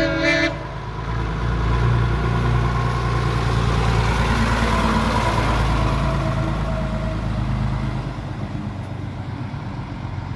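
Guy Big J6 concrete mixer lorry giving a brief horn toot right at the start, then its diesel engine running as it drives past close by, loudest in the middle and fading as it moves away.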